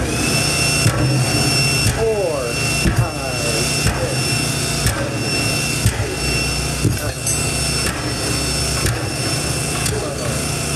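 A sequence of buried explosive charges detonating about one a second in a full-scale blast-liquefaction test around a loaded test pile. A steady low motor hum runs underneath, with a steady high tone over the first six seconds or so.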